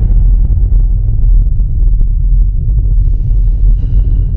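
Deep, steady low rumble of a cinematic intro sound effect, with a faint thin high tone coming in near the end.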